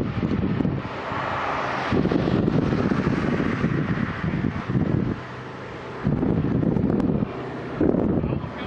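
Wind buffeting the microphone in gusts that start and stop abruptly, over a steady distant rumble from a jet airliner cruising high overhead.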